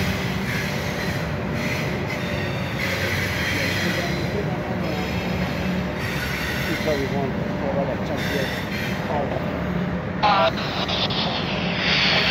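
Double-stack intermodal freight cars rolling past on the rails: a steady, continuous rumble of steel wheels on track.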